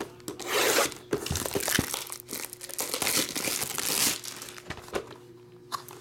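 Plastic shrink wrap being slit and torn off a sealed box of trading cards, crinkling and tearing for most of the time, then quieter for the last second.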